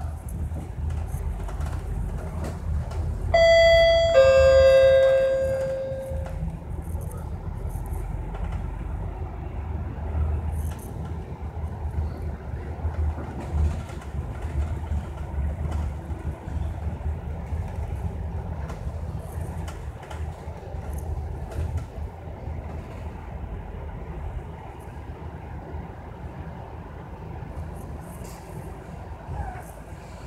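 MAN A95 double-deck bus running on the road, heard from the upper deck as a steady low engine and road rumble. About three seconds in, a two-tone ding-dong chime from the bus's on-board bell sounds, a higher note then a lower one, ringing out for about two seconds.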